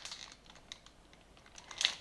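Faint, scattered light clicks of a clear plastic produce clamshell being handled and held up, with a short breath near the end.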